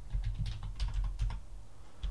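Computer keyboard being typed on: a quick run of separate keystrokes that stops about a second and a half in.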